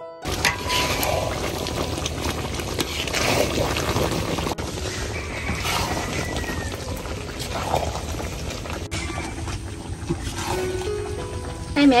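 Thick banana and ginger candy mixture sizzling and bubbling in a steel wok over a wood fire, with a metal spatula stirring and scraping through it every second or two. Faint background music lies underneath.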